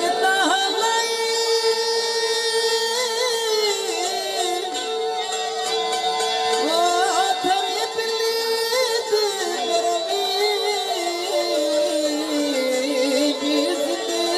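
Saraiki folk music: a steady held drone note under a winding, ornamented melody.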